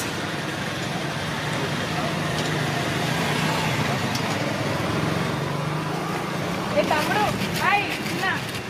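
Roadside traffic noise with a steady engine hum and indistinct background voices, and a few short rising-and-falling calls near the end.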